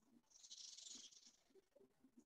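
Near silence, with a brief faint hiss about half a second in.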